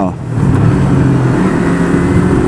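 Yamaha YZF-R25's parallel-twin engine revving up after a downshift. Its note swells about a third of a second in and then holds steady at high revs, around 7000 rpm.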